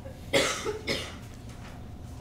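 A person coughing: a few short coughs close together in the first second.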